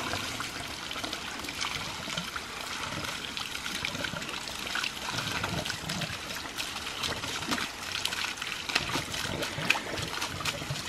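Water jetting from the open valve at the end of a micro-hydro penstock pipe and splashing onto rocks: a steady splashing.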